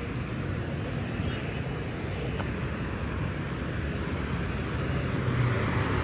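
Road traffic passing: cars and motorcycles driving by, a steady hum of engines and tyres that swells a little near the end.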